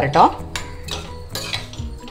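Metal spoon stirring a wet bitter gourd curry in a stainless steel pot, clinking and scraping against the pot's sides several times.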